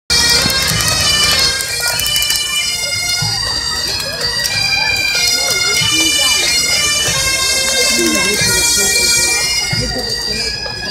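A pipe band's bagpipes playing a marching tune, the melody moving over steady, unbroken drones.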